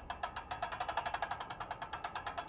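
Bicycle rear freehub ratchet clicking in a rapid, even run as the rear wheel turns freely with the cassette.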